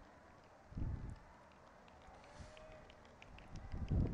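Faint outdoor street ambience from a road-race broadcast feed between commentary lines, with a soft low thump about a second in.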